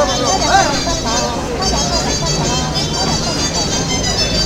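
People talking close by over the music for an outdoor folk dance, with a steady low rumble underneath.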